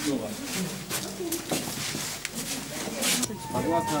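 Indistinct voices of several people crowded together in a stairwell, with a few sharp clicks and knocks.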